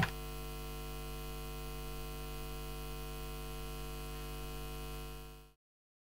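Steady electrical mains hum with a faint hiss, cutting off suddenly to silence about five and a half seconds in.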